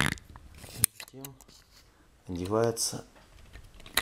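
Sharp clicks of a recessed ceiling spotlight being handled, its lamp and retaining ring pushed into place: one click at the start, a louder one just before a second in, another near the end.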